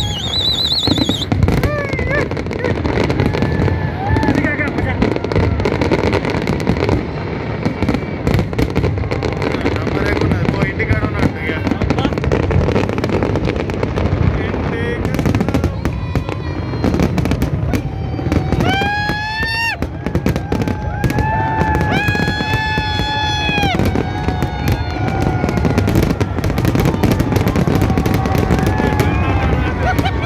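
Aerial fireworks display bursting overhead in a continuous run of crackles and bangs, with crowd voices shouting and calling out over it, loudest in pitched calls around the middle.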